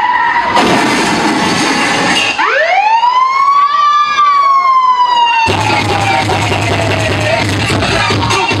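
DJ mix transition on a loud sound system: the music drops away and a siren-like sweep rises, then slowly slides down. A new dance beat with heavy bass comes in about five and a half seconds in.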